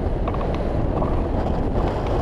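Wind rushing over the microphone of a camera mounted on a hang glider in flight: a steady rumble of wind noise.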